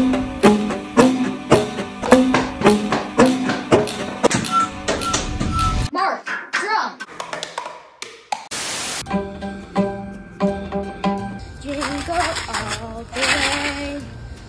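Homemade music: a row of tuned tubes struck with paddles, giving a steady beat of pitched hits about twice a second. After about six seconds it gives way to other homemade instruments over a backing song, with some singing near the end.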